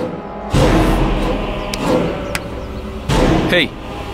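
Dramatic TV-serial background music with a sudden low booming hit about half a second in and another about three seconds in. A man's short spoken "Hey" comes near the end.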